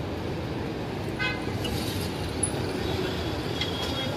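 Roadside ambience: a steady rumble of traffic and crowd chatter, with a short vehicle horn toot about a second in.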